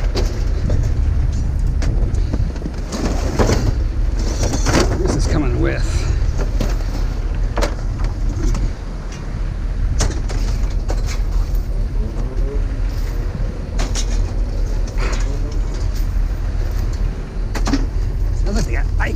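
Scrap metal and junk clanking and knocking as pieces are pulled out of a trailer and tossed onto a pile, a dozen or so separate hits over a steady low rumble.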